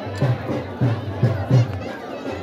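Dhol drum beating a steady dhamal rhythm of about three strokes a second, over the voices of a crowd.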